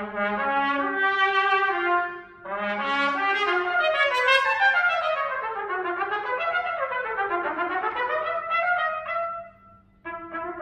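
Solo trumpet playing unaccompanied: a phrase of separate notes with a brief break just after two seconds, then fast runs sweeping down and back up in pitch. It ends on a held note that stops shortly before the end.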